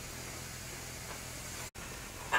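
Faint, steady hiss with a low hum underneath: room tone with no distinct sound event. It drops out for an instant near the end.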